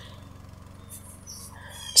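Faint bird calls, a few short high-pitched notes, over a low steady hum of outdoor background ambience.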